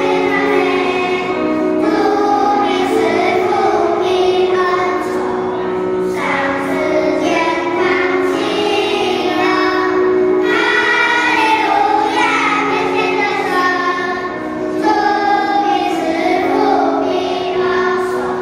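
Children's choir singing a hymn together into microphones.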